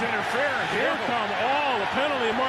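Speech: a football broadcast commentator talking over steady stadium crowd noise.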